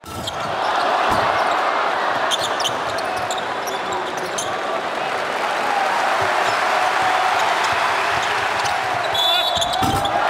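Basketball arena crowd noise with a ball being dribbled on the hardwood court, fading in over the first second and then holding steady.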